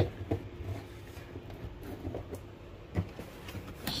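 Handling of a taped cardboard shipping box: a sharp knock right at the start, then a few faint knocks and scrapes of cardboard, over a steady low hum.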